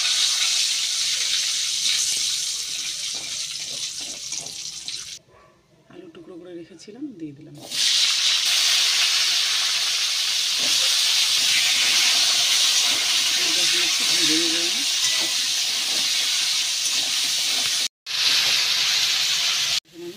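Hot oil sizzling loudly in a wok, first with bay leaves and cumin seeds frying and then with diced potatoes frying. The sizzle drops away for a couple of seconds about five seconds in and cuts out briefly near the end.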